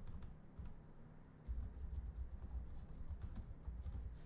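Keys on a computer keyboard being typed in quick runs, with a short pause about a second in.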